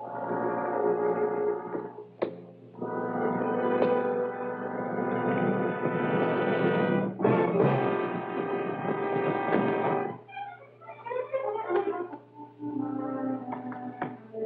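Dramatic orchestral film score led by brass, playing sustained chords, with a sharp hit about two seconds in. Near the end the music breaks into short scattered notes.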